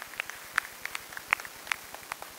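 Scattered hand claps from a small audience: a thin round of applause with irregular, uneven claps, a few standing out louder.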